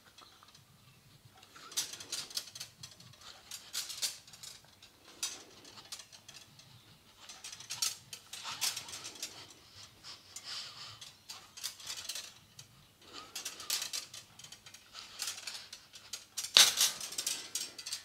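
Brake line tubing pulled off its coil through a hand-held roller tube straightener in repeated strokes: a short burst of metallic clicking and scraping every second or two from the rollers and the tube, the loudest near the end.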